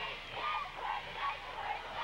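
Basketball game sounds in a school gymnasium during live play: steady crowd noise with a few short, faint squeaky tones.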